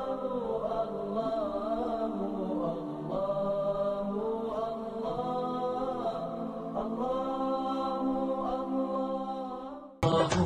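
Unaccompanied vocal chant with long, held melodic lines that slide between notes, fading out just before the end.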